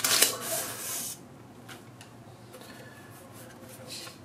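Non-woven fabric wrapping rustling as it is pulled off a boxed device. The rustle is loudest in about the first second, then fades to faint, scattered rustles of handling.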